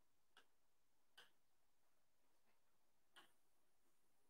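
Near silence with four faint, irregular ticks spread over the few seconds.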